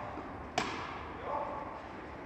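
A tennis ball struck once by a racket about half a second in, a sharp crack that echoes through a large indoor hall.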